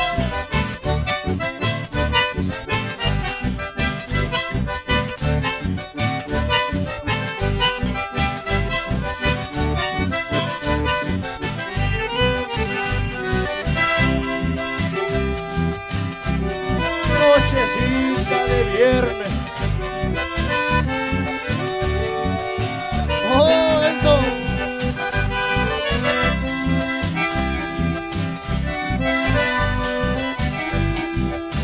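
Live folk band playing an instrumental passage: several button accordions carry the melody and chords over a strummed acoustic guitar and a steady, even low beat.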